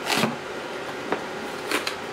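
Cardboard toy box being pried open by hand: a short rustle of cardboard at the start, then a sharp click about a second in and two quick clicks near the end as the flap is worked free.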